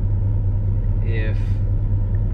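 Steady low drone of a pickup truck's engine and road noise, heard from inside the cab while it is being driven.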